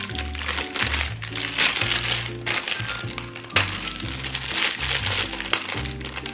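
Background music with a steady bass line, over the crinkling of a plastic snack bag being handled and opened. There is one sharp crack about three and a half seconds in.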